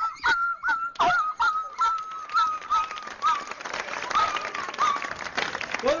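A man imitating a struck dog yelping in pain: a long run of short, high yelps, about three a second, their pitch slowly falling until they die away about five seconds in.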